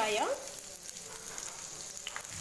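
Chopped red onions sizzling in hot oil in a nonstick frying pan: a steady, even hiss.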